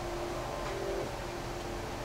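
Faint background music, a soft held low note, over a steady hiss in a quiet room.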